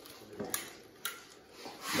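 Faint rubbing and a few soft knocks as pieces of seared venison are put back into a stew pot. A louder rushing noise builds near the end.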